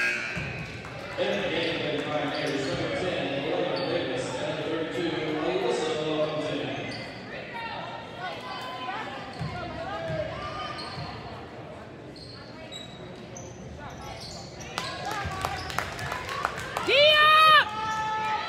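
Spectators talking in a gymnasium during a basketball game. Near the end a basketball bounces on the hardwood court and sneakers squeal sharply on the floor as players run, twice and loudly.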